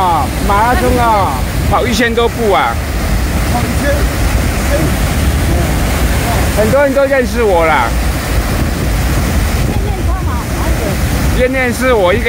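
Water discharging from a reservoir sediment-flushing tunnel outlet, a loud, steady rush of spray and churning water, with wind buffeting the microphone.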